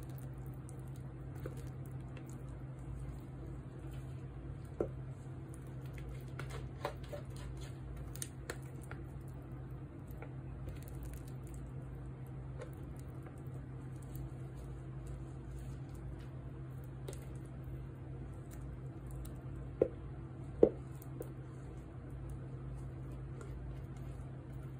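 Very thick cold process soap batter being scraped from a bowl into a loaf mold with a spatula: soft squishing and scraping, with two sharp clicks near the end, over a steady low hum.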